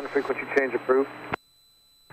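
A man's voice speaking for about a second, then a click, and near silence for the last half second.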